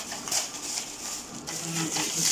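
Crinkling and rustling of shiny foil gift wrap as a present is pulled open by hand, with a faint voice briefly near the end.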